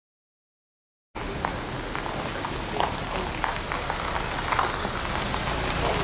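Silence for about a second, then outdoor background noise: a steady hiss with a low rumble and scattered light taps and clicks.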